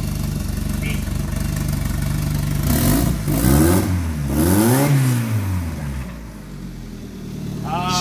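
Compound-turbocharged Honda Civic four-cylinder engine idling, then revved twice by hand from the engine bay. Each rev rises and falls in pitch, about three and four and a half seconds in, before the engine settles back to a quieter idle. The tune is still rough.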